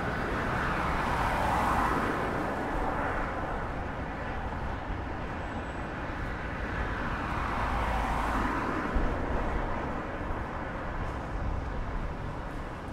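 Road traffic passing close by on the bridge roadway. Vehicles swell past twice, once near the start and again about two thirds of the way in, over a steady city traffic hum.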